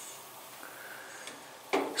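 Quiet room tone, a faint steady hiss in a pause between spoken phrases; a man's voice starts again near the end.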